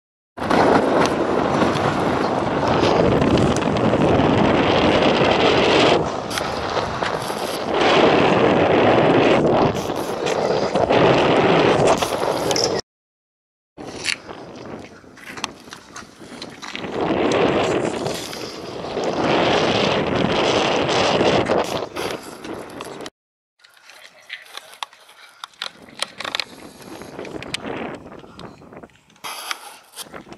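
Wind buffeting the camera's microphone: a loud, rushing noise that swells and eases, cut off abruptly to silence twice along the way. It drops to a softer rush with scattered light clicks in the last few seconds.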